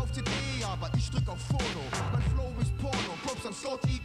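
Hip-hop track: a steady drum beat over a deep bass line, with a voice rapping over it.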